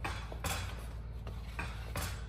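A few faint clicks and light scrapes of a metal threaded rod being turned by hand in a plastic floor-lamp base as it is unscrewed a little.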